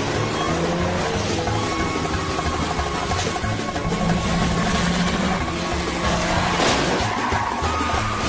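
Vintage racing cars running at speed, their engines rising and falling in pitch, mixed with background film music.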